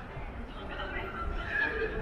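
Indistinct voices of people talking in an open plaza, with a high voice rising clearly in the second half, over a steady low rumble.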